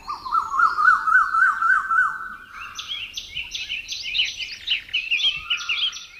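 Birdsong. A fast, even warbling trill runs for about two seconds, then gives way to a run of higher, quick rising chirps repeated several times a second.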